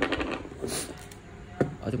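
Handling noise of a gearbox being taken apart: a few clicks, a brief scrape, and one sharp knock as a large white plastic gear is lifted out of its aluminium gear housing.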